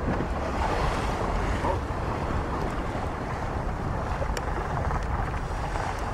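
Wind buffeting the microphone over the steady rush of water along the hull of a Haber 800C4 sailing yacht under sail in a strong wind.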